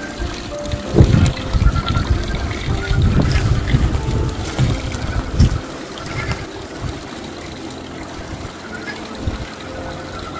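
Background music over a thin stream of water trickling into a small rock pond. Gusts of wind buffet the microphone during the first half.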